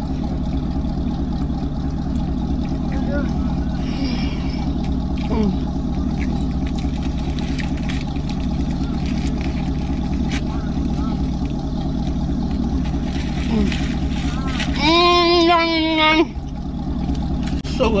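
Steady low drone of a car engine idling, heard from inside the cabin. About three-quarters of the way through, a voice hums one held, wavering note for about a second and a half.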